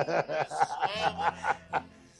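A man and a woman laughing hard in quick bursts, about five a second, that slow down and die away near the end.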